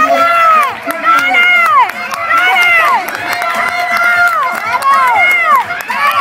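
Spectators shouting and cheering runners on in high-pitched voices: a string of drawn-out calls, each rising and falling in pitch, about one or two a second and overlapping.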